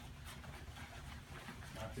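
Faint rustling and scraping of a flexible fabric stretcher being rolled up tight by hand on a tile floor.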